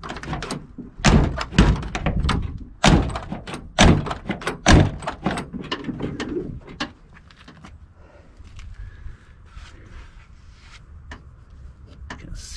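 Driver door of a 1973 GMC pickup being worked: a run of sharp clunks and clicks from the push-button outside handle and door latch as the door is opened and shut, over the first five seconds or so, then fainter clicks. The latch and handle have just been greased to cure a sticking lock.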